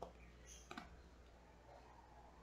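Near silence broken by a few faint clicks of playing cards being handled as cards are drawn from a Cigano deck: a sharp one at the start, then two softer ones within the first second.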